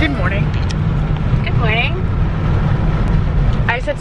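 Steady low road and engine rumble heard inside a moving car's cabin, with a few short vocal sounds from a voice over it.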